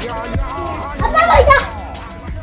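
Background music with a steady beat, about two beats a second. About a second in, a child shouts excitedly; this is the loudest sound.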